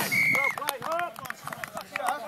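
A short, steady referee's whistle blast right after the try is grounded, then spectators shouting and cheering the score, with scattered knocks of the phone being handled.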